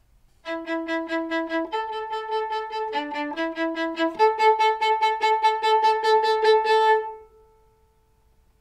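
Solo viola bowing a typical orchestral accompaniment part: one note repeated rapidly in an even rhythm, stepping to a new pitch every second or so, with the last note ringing off about seven seconds in. It is the kind of harmony-filling inner part that violas play in early symphonies, not a tune.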